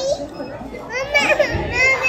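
A young child's high-pitched voice, squealing or babbling in rising and falling calls, loudest about a second in and again near the end.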